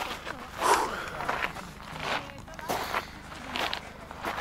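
Footsteps crunching on a loose volcanic-gravel trail at a walking pace, with faint voices of other people in the background.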